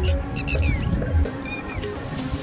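Background music with a heavy low beat that drops away a little past a second in, and short high chirps sliding downward over it.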